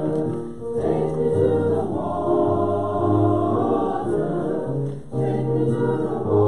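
A group of voices singing a hymn in slow, held notes over a sustained bass, with short breaks for breath about half a second in and near the end.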